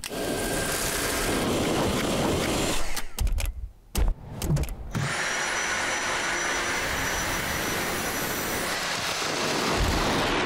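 Dyson V7 Motorhead cordless vacuum running, a steady rush of air with a high motor whine. About three seconds in the sound breaks off for roughly two seconds with a few knocks, then the vacuum runs steadily again.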